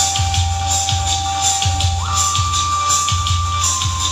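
Karaoke backing track playing: a steady beat with a tambourine-like jingle and a single held melody note that slides up to a higher note about halfway, then steps down near the end.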